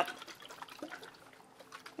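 Vinegar sloshing faintly inside a glass bottle as it is shaken to mix in added essential oil, dying away toward the end.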